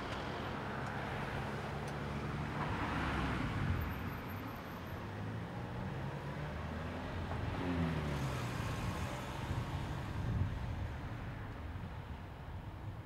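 Road traffic: a car idles close by with a steady low engine hum and later pulls away. Other cars pass with tyre and engine noise, one about three seconds in and another about eight seconds in, its pitch falling as it goes by.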